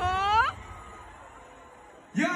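A high voice glides sharply upward and is cut off about half a second in. After that there is only faint background sound.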